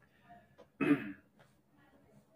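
A man clears his throat once, briefly, about a second in. The rest is near silence.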